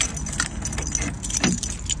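Light metallic jingling and clinking, like keys or bag hardware, over a steady low rumble of wind and handling noise on a phone microphone carried while walking.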